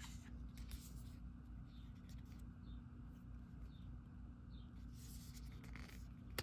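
Quiet rustling and light taps of hands handling a card box and a paper guidebook, the loudest near the end, over a steady low hum. Faint high chirps come now and then, about once a second.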